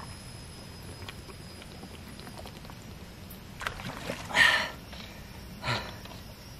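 A person's short breathy exhales, three of them, the loudest a little past the middle, over a quiet outdoor background, after drinking from a plastic water bottle.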